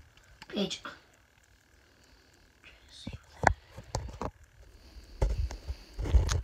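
A brief vocal sound just after the start, then a lull. From about three seconds in come a few sharp light knocks and clicks, then low handling rumbles from a handheld phone, as crossed pencils on paper on a wooden desk are adjusted by hand.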